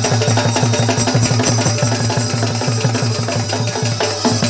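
Live folk music: a fast, even beat on a barrel drum with other percussion.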